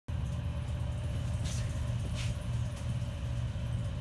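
Steady low hum of a research ship's engines and machinery, with two faint brief hisses about one and a half and two seconds in.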